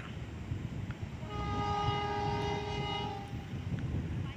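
Diesel locomotive horn giving one steady blast of about two seconds, several notes sounding together, starting about a second in. It is semboyan 35, the horn signal that the train is about to depart.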